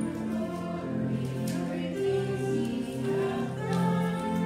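Choral music with long held chords.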